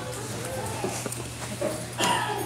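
Indistinct murmur of voices in the room with a few light knocks and clicks, over a steady low hum.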